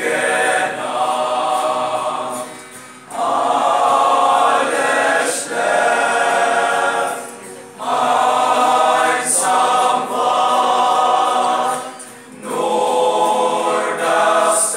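Group of young men singing a Christmas carol together as a choir, in sustained phrases about four seconds long with short breaks for breath between them.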